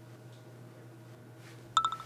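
Quiet room tone, then near the end a short electronic beep from a smartphone, a quick run of high-pitched pulses.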